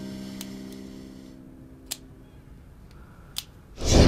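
Dramatic score: a sustained piano-like chord fading away, with faint ticks about every second and a half, then a short loud whoosh near the end as the scene changes.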